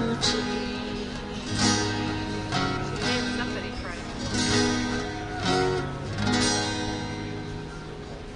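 Two acoustic guitars strumming chords, a fresh strum every second or so with the chords ringing on between.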